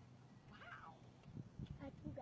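A cat's short meow about half a second in, followed by faint low crackling and rustling.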